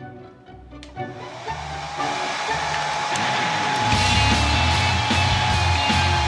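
A hair dryer switched on about a second in, its motor whine settling into a steady high tone over the rush of air as it blows onto a chocolate figure. Loud music with a heavy beat comes in at about four seconds.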